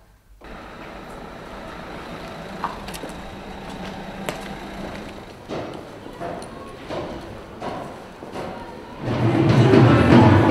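City street ambience with scattered knocks. About nine seconds in, loud music with a drum beat and crowd noise from a street demonstration suddenly takes over.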